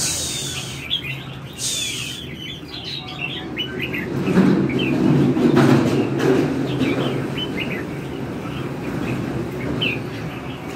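Caged red-whiskered bulbuls singing short, quick chirping phrases on and off. From about four to seven seconds in, a louder low rumbling noise with a few knocks rises under the song.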